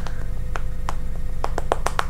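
Hands clapping in a quick, uneven run of sharp claps over a steady low hum.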